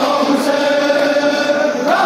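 Massed men's voices chanting a noha, a Shia lament, in unison on long held notes, the melody stepping up in pitch just before the end.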